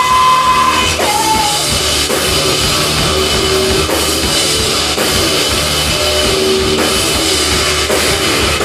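A live rock band playing loudly, with the drum kit driving throughout. A woman's held sung note ends about a second in, after which the band plays on without the voice.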